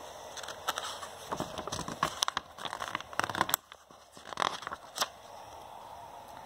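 A paper picture-book page being turned by hand: a run of irregular rustles and crinkles lasting about five seconds, with a short lull a little past the middle.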